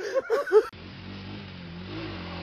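A quick string of short, high-pitched animal calls, each rising and falling, cuts off abruptly under a second in. It is followed by a quad bike (ATV) engine running steadily.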